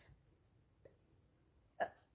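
Near silence in a small room, broken by one brief vocal noise from the woman near the end.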